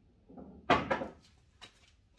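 A brief low rolling rumble, then one loud, sharp knock about three quarters of a second in, followed by a couple of faint clicks: a pocketed pool ball running down the table's ball return and striking the balls already collected there.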